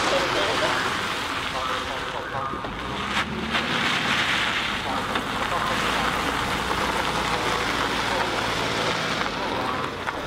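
Wind rushing across the microphone outdoors, with the low steady hum of an idling vehicle engine setting in about three seconds in.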